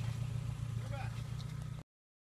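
Car engine idling nearby with a steady low hum. The sound cuts off abruptly near the end.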